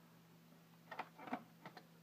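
Near-quiet low hum, with a few faint short clicks starting about a second in.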